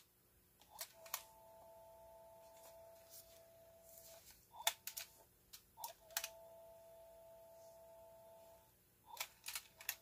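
Plastic button clicks and transport clunks from an Aiwa HS-RX650 portable cassette player as its keys are pressed, in pairs about a second, four and a half, six and nine seconds in. A faint steady tone holds between the clicks.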